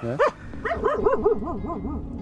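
A Finnish spitz hunting dog giving a quick run of short yips, about six a second, starting about half a second in.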